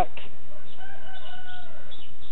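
A faint animal call in the background: one long, slightly falling note lasting about a second.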